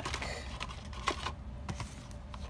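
A handful of light plastic clicks and taps from a gold leafing pen in its card-and-plastic blister pack being handled and set back down on a shelf. The sharpest click comes about halfway through.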